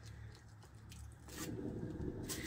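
Faint rumble of a painting turntable being spun slowly by hand, with a few light handling clicks; it grows a little louder about a second and a half in.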